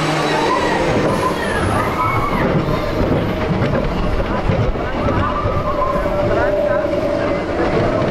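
Roller coaster train rolling slowly along its steel track, wheels rumbling and clattering over the rail joints, with voices over it.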